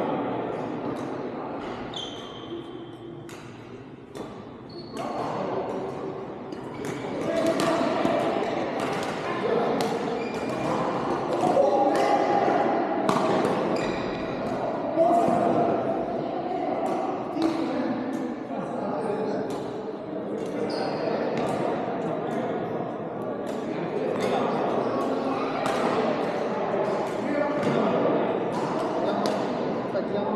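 Badminton rackets striking shuttlecocks in rallies on several courts, sharp hits coming every second or so and ringing in a large hall, over a bed of indistinct voices.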